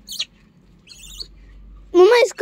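Gray langurs squeaking as they crowd in to be fed: a very short high squeak at the start, then a longer high chirping squeal about a second in.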